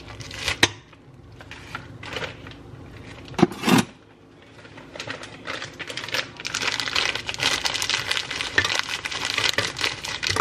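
Pieces of fruit clicking and knocking as they drop into a plastic blender jar, with two louder knocks about three and a half seconds in. Over the second half a plastic bag of fruit rustles and crinkles steadily as it is handled and emptied.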